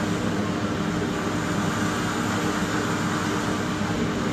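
Gas torch flame hissing steadily as it melts a lump of gold, over a steady low hum.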